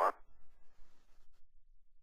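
Faint hiss on the broadcast audio feed for about the first second and a half, then near quiet.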